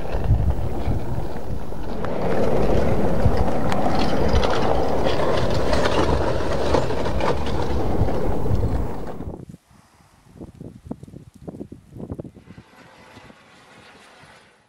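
Natural sound at an active lava flow: a dense rushing rumble with crackling, like wind on the microphone over the flow. About nine seconds in it drops sharply to quieter, scattered sharp crackles and clicks of the cooling lava crust.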